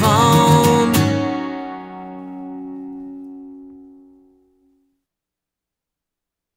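The final chord of an acoustic-guitar-led indie rock song: one last strum about a second in, left to ring and fade away over the next few seconds.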